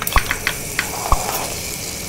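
Animated-logo sound effect: a steady hissing rush with scattered clicks, and two low knocks, one about a fifth of a second in and one just past a second in.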